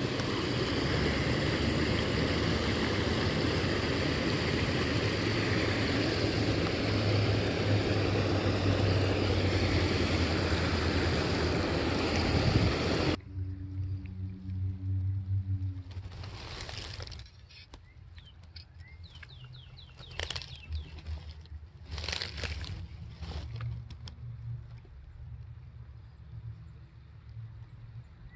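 Steady rush of water from a small creek waterfall close by, which cuts off abruptly about halfway through. After it comes a much quieter creek-side background with a few brief rustling and handling noises.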